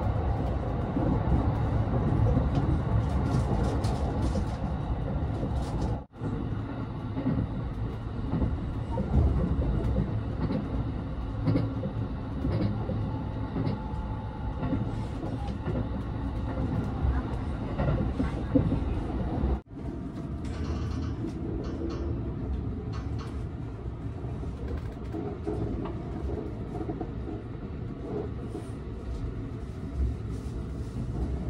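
Running noise inside the passenger cabin of a JR West 289 series electric limited express train: a steady rumble of wheels on rails, weighted to the low end. The sound cuts out abruptly twice, about six seconds in and again near twenty seconds.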